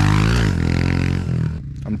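Honda CRF110 dirt bike's small four-stroke single-cylinder engine revving as the bike pulls away on a dirt track, its pitch rising and then falling about half a second in. The engine sound stops abruptly about a second and a half in.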